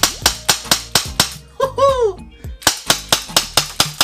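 Airsoft pistol with a tracer unit on the muzzle firing rapid shots at about four a second: six shots, a pause of about a second and a half with a short vocal sound, then about seven more.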